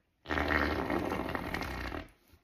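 One long fake fart, blown by mouth into cupped hands. It starts about a quarter second in and lasts nearly two seconds.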